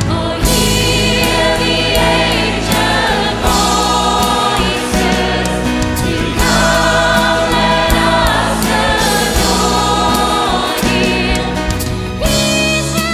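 A large mixed choir singing in harmony, accompanied by a band with acoustic guitars, keyboard and drums.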